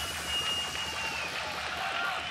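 Quiet breakdown in an electronic dance track played through a club system: a single held high synth tone that stops a little past halfway, over a low steady drone, with no beat.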